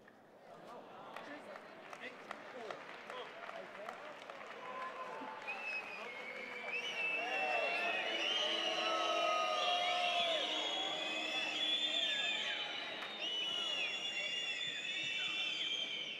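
Arena crowd at a table tennis match cheering and shouting after a point, swelling to full volume about halfway through. A few sharp ticks of the celluloid ball on bats and table come before it.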